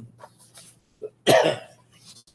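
A man coughs once, a little over a second in: a single short, loud cough.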